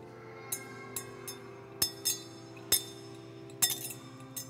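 Sharp metallic clinks, about six of them, some in a quick cluster near the end, each with a short ring, over sustained organ-like music.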